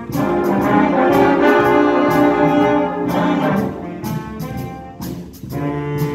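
Student concert band of saxophones and brass playing together in held chords. It is loud for the first three seconds or so, eases off, then comes back in with a new chord near the end.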